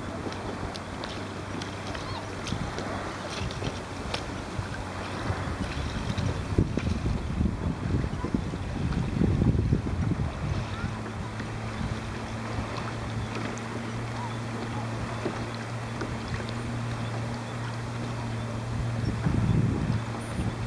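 Steady low hum of a boat's motor over rushing water and wind on the microphone, with a higher tone joining the hum about halfway through.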